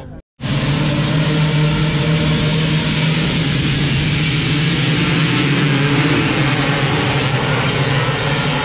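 A large pack of enduro dirt bikes racing off together, many engines running hard at once in a dense, steady drone. It starts abruptly a moment in.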